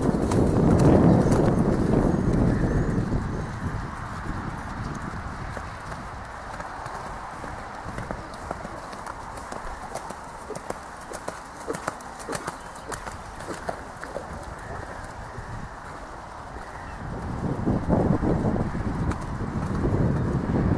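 Horse cantering on a sand arena, hoofbeats thudding. The hoofbeats are loudest in the first few seconds and again near the end, and fainter in between.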